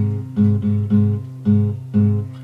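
Acoustic guitar strummed, about five strokes of the same chord in a loose rhythm, each ringing and dying away before the next.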